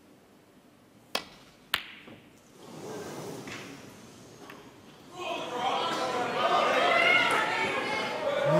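A snooker shot: the cue tip's sharp click on the cue ball, then a second click about half a second later as the ball strikes another ball. Then the arena crowd murmurs, swelling louder from about five seconds in, reacting to a missed long red.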